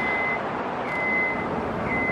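A vehicle's reversing alarm beeping: a single high tone about once a second, each beep about half a second long, over steady street-traffic noise.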